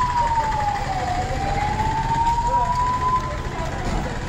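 Emergency vehicle siren wailing: one tone that slides down over the first second, climbs back over the next two seconds and then holds. Low street rumble and voices lie beneath it.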